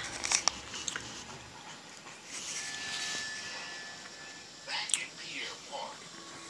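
Soft rustling and handling of newspaper coupon inserts as the pages are turned, with faint voices in the background.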